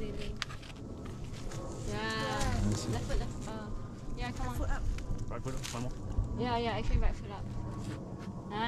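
Three short wordless vocal calls, each rising and falling in pitch, as a boulderer climbs a rock problem.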